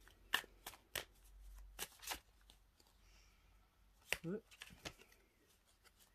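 A deck of oracle cards being shuffled by hand: quick, irregular card snaps through the first couple of seconds, then another short flurry a little after four seconds.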